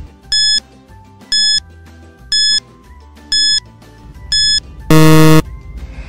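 Countdown timer sound effect: five short high electronic beeps about one a second, then a loud, low buzzer about five seconds in that signals time is up.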